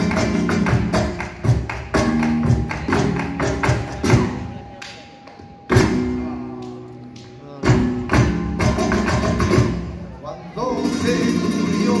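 Live flamenco: fast runs of a dancer's shoe strikes on the stage (zapateado) over flamenco guitar chords. The footwork breaks off about five seconds in, returns in single sharp accents, then a fuller strummed passage comes in near the end.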